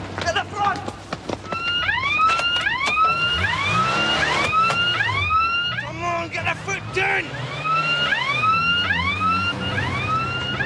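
A siren yelping: fast rising wails, about two a second, starting about a second and a half in, breaking off briefly past the middle and then resuming. A car engine runs underneath, and a few sharp knocks come in the first second.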